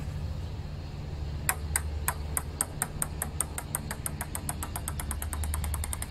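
A ping-pong ball bouncing on a hard surface, a series of light clicks that come quicker and quicker as the bounces die away. A steady low hum runs underneath.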